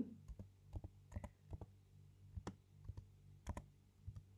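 Computer keyboard being typed on, a dozen or so faint, irregularly spaced key clicks as a word is typed, over a faint low hum.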